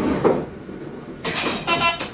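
Shin-Keisei 8000 series electric train standing still. There is a thump near the start, a sharp burst of air hiss a little over a second in, then a short buzzing tone just before the end.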